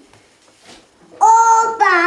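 A toddler's high-pitched voice calls out two loud, drawn-out syllables, starting a little over a second in.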